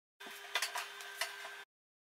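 Metal baking tray being pulled out of an oven, with a few sharp clinks and a scrape against the oven rack over a steady hum.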